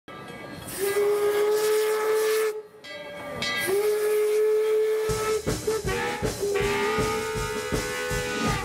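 Steam locomotive whistle blowing two long steady blasts, then sounding again over rhythmic low thumps that start about five seconds in.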